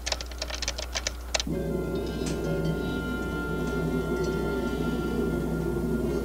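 Quick keystrokes on a computer console keyboard for about the first second and a half. Then sustained background music with long held tones takes over.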